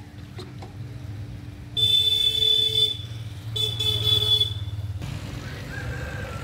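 A vehicle horn honks twice, each blast about a second long, the first about two seconds in and the second near four seconds. Under it runs a steady low hum that stops about five seconds in.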